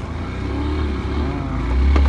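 Motorcycle engine running, its low sound getting louder about a second and a half in.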